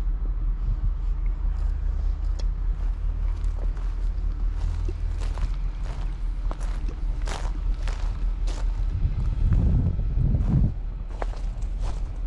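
Footsteps on a dirt path strewn with needles and small stones, with a run of short, sharp crunches in the second half. Under them is a steady low rumble that swells for a second or so a couple of seconds before the end.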